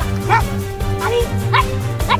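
A dog giving a few short, high yelping barks over background music with a steady low beat.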